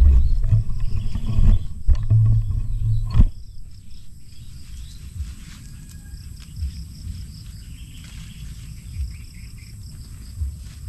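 Loud low rumbling on the microphone for about three seconds, cutting off suddenly, then faint rustling and small snaps of yardlong bean vines as pods are picked by hand.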